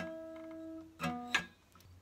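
Acoustic guitar strings plucked as natural harmonics, touched at a node so that a pure overtone rings instead of the open note. Two notes about a second apart, the second one lower, each ringing briefly, with a sharp click just after the second.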